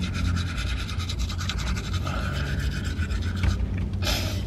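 Rubbing and scratching handling noise on a phone microphone, over a steady low hum in a car cabin.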